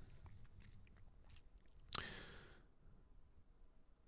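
Near silence: room tone with a few faint ticks, and one short click followed by a brief hiss about halfway through.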